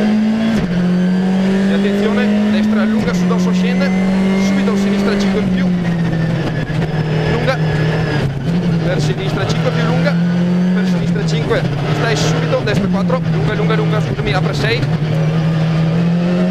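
Skoda Fabia R5 rally car's 1.6-litre turbocharged four-cylinder engine heard from inside the cabin, driven hard at speed. The engine note is held high and steps abruptly down and back up several times as the driver shifts gears.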